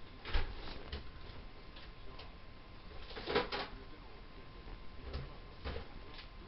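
Quiet room tone with a handful of short, soft clicks and knocks, about five in all, the strongest a double knock about three seconds in.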